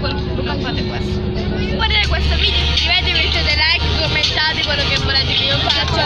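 Steady low rumble of a moving bus heard from inside the cabin, under the high-pitched chatter of young passengers' voices that grows busier about two seconds in.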